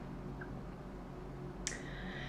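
Quiet room tone with a faint steady low hum from the recording setup, and a short soft intake of breath near the end.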